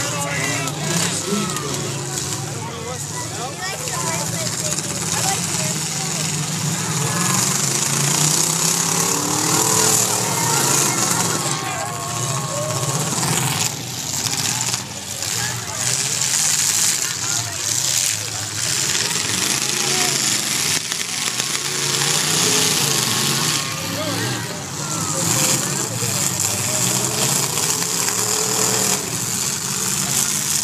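Demolition derby cars' engines revving and bellowing as they spin and ram one another on a dirt track, with occasional crash impacts and the voices of the crowd mixed in.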